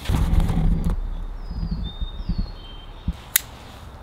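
Low knocks and bumps of a cardboard box being handled on a metal mesh table, loudest in the first second. A single sharp click comes about three seconds in. Faint bird chirps sound high in the background.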